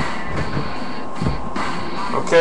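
Stacks of trading cards being handled and squared up by hand on a table, with soft low thumps as a pile is set down, once at the start and again just past the middle.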